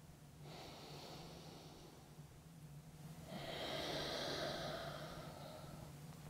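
A man breathing slowly and audibly through the nose: a faint breath lasting under two seconds, then a longer, louder one starting about three seconds in.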